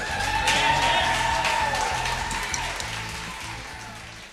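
A live band's closing chord: a last hit together on the drums, then the held note and cymbals ringing out and slowly dying away as the song ends.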